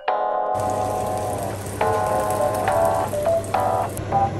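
Background keyboard music, with an even hiss starting about half a second in, like glazed chicken pieces sizzling in a frying pan.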